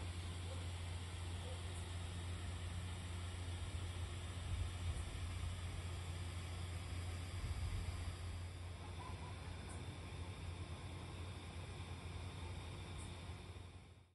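Steady low hum with a faint hiss, the electric blower fan of an inflatable Santa yard decoration running continuously to keep it inflated; it fades out near the end.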